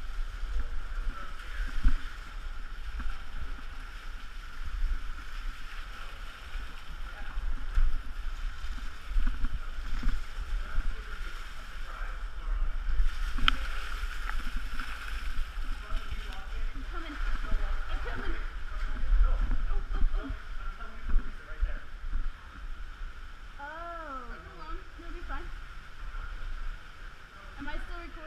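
Heavy rumble and knocking of handling on a body-worn camera during a rappel down a wet slot canyon, over a steady rush of running water. A voice calls out briefly near the end.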